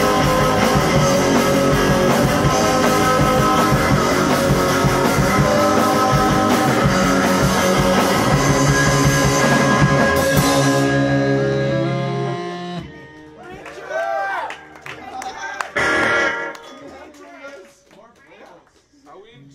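A live rock band plays loudly with electric guitar. About eleven seconds in, the song thins to a few held notes and stops near thirteen seconds, followed by voices.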